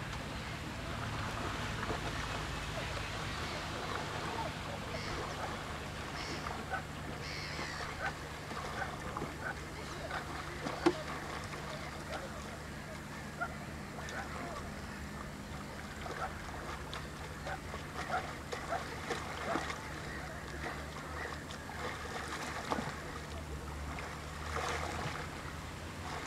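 Small waves lapping against rocks at the water's edge, with many irregular little splashes and clicks, one sharper than the rest a little before halfway, over a steady low rumble.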